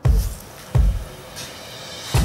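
Background music with a low bass beat: deep hits at the start and again nearly a second in, over a quieter sustained backing.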